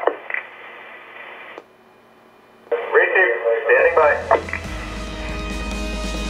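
Analog police radio traffic heard from a Uniden SDS200 scanner: the end of one transmission, a stretch of channel hiss that cuts out, then another short burst of radio voice about three seconds in. Music comes in near the end.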